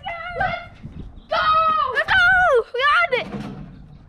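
Boys' excited wordless cries: a short shout at the start, then several long, pitch-sliding shouts from about a second in, fading near the end.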